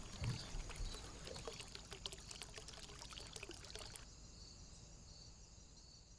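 Faint fizzing crackle of soap lather as its tiny bubbles pop, many fine clicks that stop about four seconds in, with a soft bump near the start. A faint steady hiss is left after.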